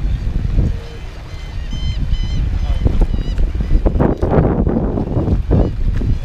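Wind buffeting the microphone as a low, steady rumble while the kayak moves along on choppy water, with a few short high chirps about two seconds in.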